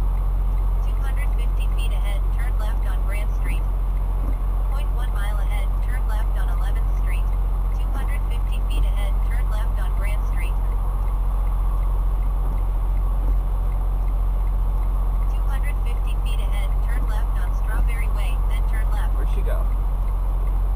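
The Detroit DD15 diesel of a 2016 Freightliner Cascadia idling steadily, heard from inside the cab. Indistinct voices come and go over it.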